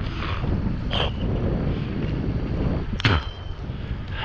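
Wind buffeting the camera microphone on a moving bicycle, with two short metallic pings of the handlebar bicycle bell, about a second in and again near three seconds in, each ringing briefly; the second is louder and rings longer.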